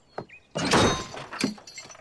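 Cartoon sound effect of a large steel bear trap springing shut: a loud, sudden crash about half a second in, with a small click before it and a smaller knock after it.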